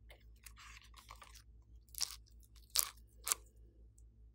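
Sticky slime crackling as it is pulled away from a silicone mold and worked over a dish: a soft crackly rustle at first, then three sharp, wet crackling pops in the second half.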